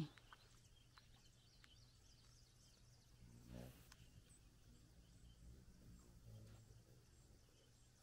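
Near silence: quiet outdoor ambience, with a few faint high chirps in the first two seconds and one brief faint sound about three and a half seconds in.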